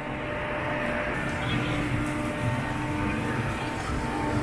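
Amusement-park ambience: a steady low rumble with a constant hum, and faint distant voices.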